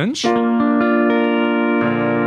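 Double-neck Mullen pedal steel guitar notes picked one after another and left ringing, building into a sustained chord in B-flat, over electric keyboard accompaniment; a lower bass note joins near the end.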